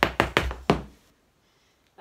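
Irish dance hard shoes striking a floor mat: four sharp beats in the first second, the opening of a hornpipe step danced slowly.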